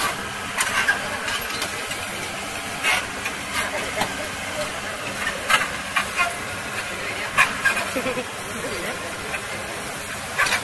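Excavator's diesel engine running steadily, with a string of short sharp sounds over it.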